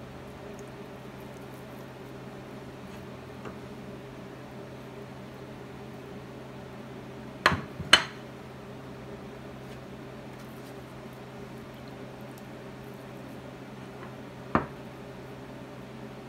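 Steady low kitchen hum while balls of barley dough are shaped by hand, broken by two sharp clinks of kitchenware half a second apart about halfway through and one more near the end.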